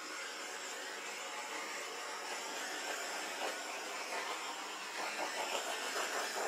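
Handheld butane torch burning with a steady hiss, passed over a freshly poured acrylic painting to pop air bubbles.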